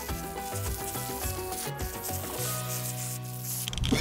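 Hiss of a garden hose spray nozzle watering soil, under background music.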